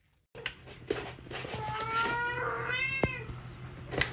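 A cat giving one long meow that rises in pitch toward its end, with a sharp click about three seconds in.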